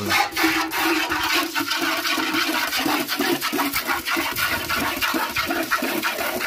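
Hand milking of a cow: streams of milk squirting from the teats into a galvanised metal bucket that already holds foamy milk, in a quick, steady rhythm of squirts.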